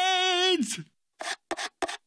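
A character's held, wide-mouthed shout ends with a falling pitch about half a second in. Then come several quick scrapes of a metal spoon against the inside of an empty plastic pudding cup.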